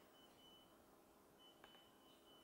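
Near silence: room tone, with a faint, thin high tone that comes and goes and a single faint click about one and a half seconds in.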